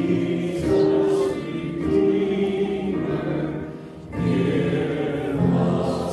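A choir singing a hymn in slow, held notes, with a break between phrases about four seconds in.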